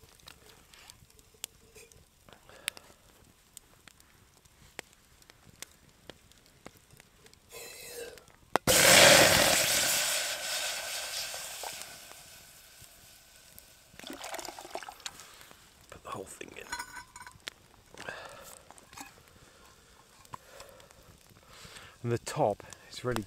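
Water poured from a steel thermos into a hot pot on a campfire: a sharp clink about nine seconds in, then a loud hiss that fades away over about three seconds as the water hits the hot metal. Light clicks and clinks of metal cookware handled before and after.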